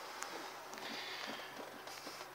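Faint, steady background noise with no distinct event.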